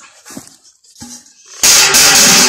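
Water poured from a stainless steel bucket into a plastic watering can, starting suddenly as a loud gush about one and a half seconds in.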